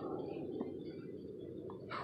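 Faint steady background noise with a couple of soft ticks, and no clear sound event.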